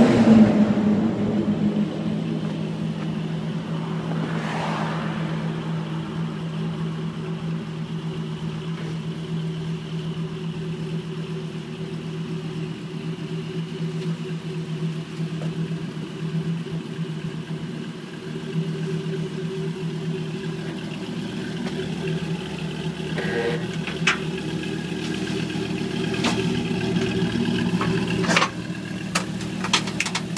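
Dodge Viper's V10 engine idling steadily while the car is driven slowly down a car-carrier's ramp, with a louder burst right at the start and a few sharp clicks and knocks from the steel ramps in the last several seconds.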